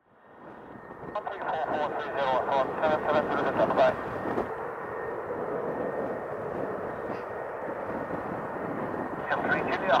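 Air band radio traffic over a scanner: a short, hissy, garbled voice transmission about a second in, then steady radio static, and another transmission starting near the end.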